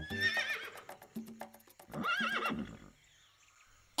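Horse sound effect whinnying twice: a high, wavering neigh at the start and a lower one about two seconds in. Rhythmic children's music plays under the first neigh and stops before the second.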